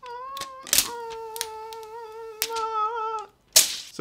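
Protective plastic film being peeled off a metal power conditioner, with a few sharp crackles, under a long, high, slightly wavering tone that breaks once just under a second in and stops a little after three seconds.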